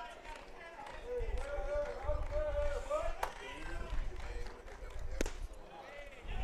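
Ballpark ambience: faint voices of fans calling out over a low rumble, with two sharp clicks. The second click, about five seconds in, is the pitch popping into the catcher's mitt.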